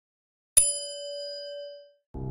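A notification bell sound effect: a single bright ding about half a second in, its ringing tones fading away over about a second and a half.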